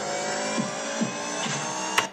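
Homemade dubstep-style track played back from audio-editing software: a dense, buzzing mass of sustained tones with a short falling-pitch blip about every half second. It stops abruptly with a click at the end.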